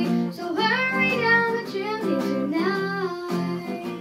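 A young girl singing into a microphone, her voice sliding up and down through a drawn-out phrase, over backing music with a steady strummed rhythm. The voice stops a little after three seconds in, leaving the accompaniment.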